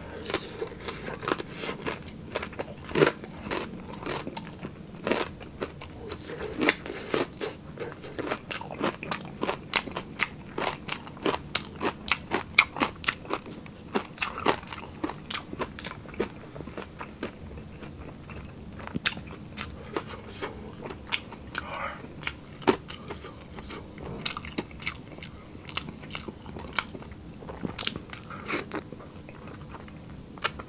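Close-miked crunching and chewing of crispy fried pork: many sharp crunches, one after another, that thin out for a couple of seconds past the middle and then pick up again.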